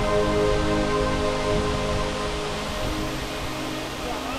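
Background music of slow, held chords over a steady rush of falling water, sinking slightly in level toward the end.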